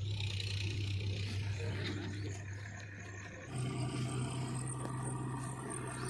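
Diesel engines of a farm tractor and a backhoe loader running, a steady low hum; about three and a half seconds in the pitch steps up and the sound grows louder and fuller.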